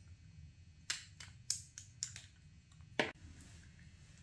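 Light plastic clicks and taps from makeup packaging being handled: a lip gloss tube being closed and set down and a compact picked up, with long acrylic nails clicking on the plastic. About eight sharp clicks, the loudest about three seconds in.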